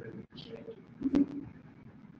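Brief, quiet speech in a room: a short murmured word or two, such as an acknowledging "you" or "mm-hmm", between a speaker's comment and the reply.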